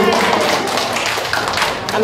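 Hand claps from a small group of people: a quick, irregular run of sharp claps.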